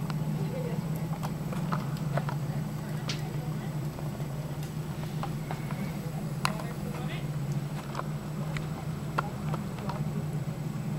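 Horse hoofbeats on a sand arena, heard as scattered, irregular sharp clicks over a steady low hum.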